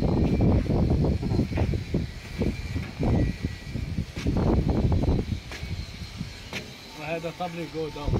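Men's voices talking and calling out on an open deck, over a constant low rumble of wind on the microphone; one voice comes through most clearly near the end.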